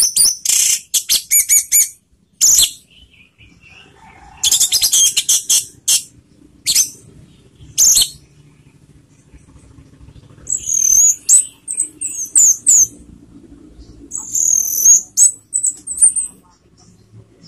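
Orange-headed thrush (anis merah) singing in bursts. It opens with fast, high chattering phrases, and the second half brings clear whistled notes that slide in pitch. Short pauses fall between the phrases.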